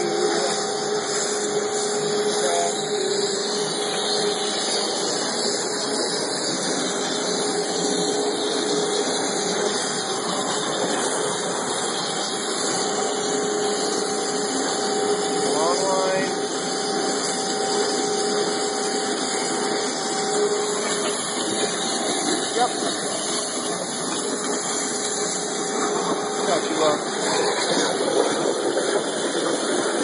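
Waterjet cutting machine running: a steady hiss and hum with two steady tones throughout.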